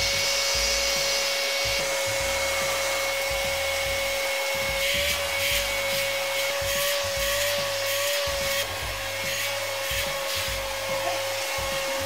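WORX WX030 20V cordless vacuum cleaner running steadily with a high whine, sucking debris off a cushion through its hose. Scattered ticks in the middle come from bits being pulled up the hose.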